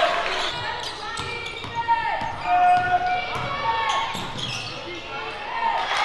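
Live basketball game sound on a hardwood court: a ball bouncing, short sneaker squeaks and players' shouts.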